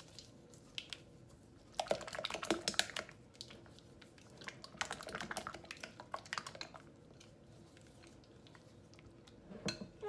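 A spatula stirring thick sour cream and mayonnaise in a glass bowl: soft wet squelches and small clicks in two spells, about two seconds in and again about five seconds in, with a few single ticks between.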